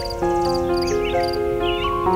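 Soft, slow piano music with held notes, mixed with birdsong: short chirps that curl up and down in pitch. A high chirp repeats about three times a second under it.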